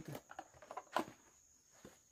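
Light clicks and taps of plastic food containers and their lids being handled, mostly in the first second with one sharper click about a second in.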